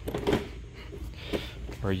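Faint handling noise of an Olympia Pack-N-Roll collapsible service cart being pressed down in the middle to unfold its shelves, with a soft knock about a third of a second in.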